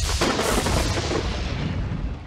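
Thunderclap sound effect: a sudden loud crack that rolls into a long low rumble, dying away over about two seconds.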